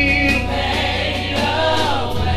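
Gospel praise team choir singing over an instrumental backing with a steady bass line and a drum beat.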